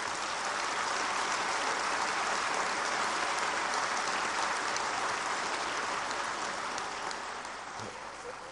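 Applause from the members of a legislative chamber: many hands clapping in a steady, even clatter that dies down near the end.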